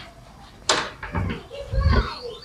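Indistinct low voice with a few soft thuds of footsteps, and a short sharp hiss about two-thirds of a second in.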